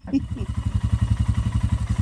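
Motorcycle engine idling with an even, rapid beat of firing pulses.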